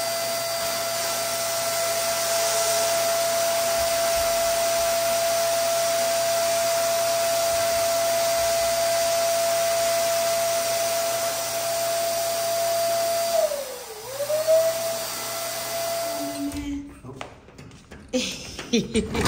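Electric balloon pump inflating a large foil number balloon, its motor running with a steady whine. About 14 seconds in its pitch dips briefly and recovers, and it stops near the end.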